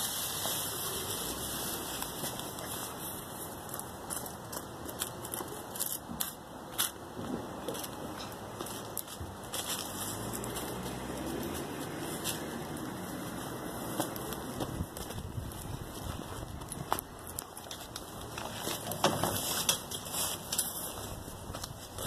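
Steady rustling with scattered crackling clicks: footsteps through grass and woodchip mulch while a small basket is carried.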